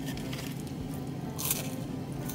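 Quiet eating sounds: chicken nuggets being chewed and a cardboard nugget box handled, with a brief rustle about one and a half seconds in, over a low steady hum.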